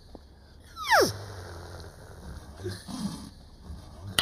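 A quick whistle-like glide about a second in, falling steeply from high to low in pitch, over a faint low hum.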